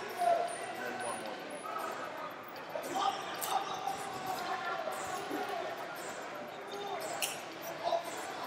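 Distant voices echoing in a large gymnasium hall, with a couple of brief sharp sounds about three and a half and seven seconds in.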